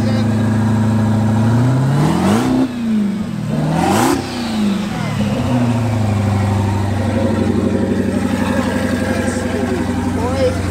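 Supercharged HEMI V8 of a Dodge Challenger, fitted with twin turbos as well, idling. It is revved twice in quick succession, about two and four seconds in, each rev climbing sharply and dropping back to idle.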